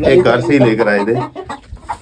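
Chickens clucking, with a man's voice over them in the first second or so.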